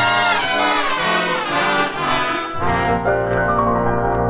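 Brass-led studio orchestra playing a music bridge, the cue that marks the time skip while the set is being built. It plays held chords, and heavier low notes come in about two and a half seconds in.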